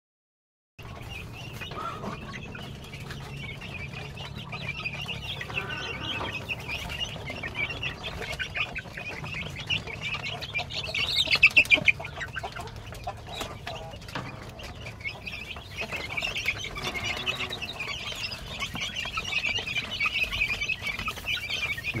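A crowd of young chickens peeping and cheeping continuously, many overlapping high calls, with a louder run of calls about eleven seconds in.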